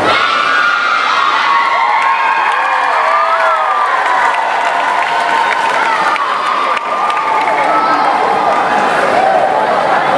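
Many young girls' voices shouting and cheering together, high and overlapping, with rising and falling squeals.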